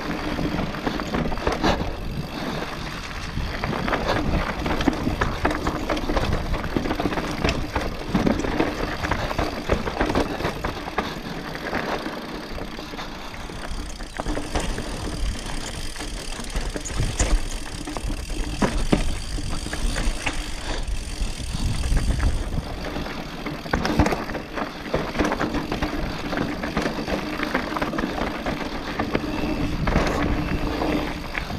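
Enduro mountain bike ridden downhill over rough dirt and rock: tyres on loose ground with a constant rattle and many sharp knocks from the bike over bumps, and a low rumble on the microphone.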